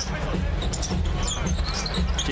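Live NBA game sound in a basketball arena: crowd noise with the ball and sneakers on the hardwood court.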